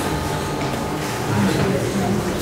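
Low, indistinct voices murmuring in a room, with no clear words.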